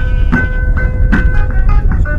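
Background music with a steady percussive beat, about two and a half strikes a second, over held sustained notes and a heavy low rumble.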